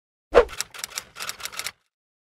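Typewriter-like key clatter sound effect: one louder strike, then about seven quick sharp clicks over a second and a half, stopping abruptly.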